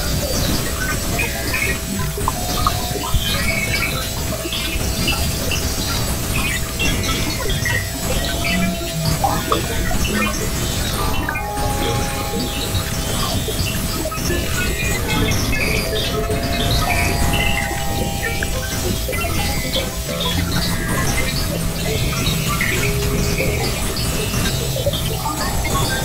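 Experimental glitch/noise electronic music: a steady held tone under a dense, crackling texture of scattered short chirps and blips, over a continuous low rumble.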